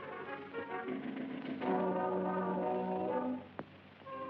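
Orchestral film-score music with brass: a held chord swells in after a second and a half, then fades out about three and a half seconds in, followed by a brief quick upward swoop.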